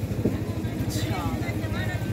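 A steady low engine rumble with an even pulse, like an idling motor, with snatches of people talking in the background.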